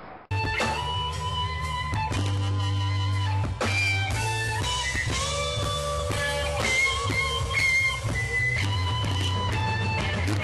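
Live band music led by an electric guitar playing held lead notes with bends over a steady bass line. It cuts in abruptly a moment in.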